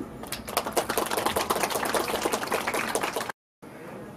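Scattered hand clapping from a small group of people, a dense run of quick, uneven claps that cuts off suddenly near the end.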